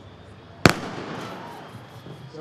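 Starting gun fired once, about two-thirds of a second in: a single sharp crack with a short reverberant tail. It signals the start of the race and sends the hurdlers out of their blocks.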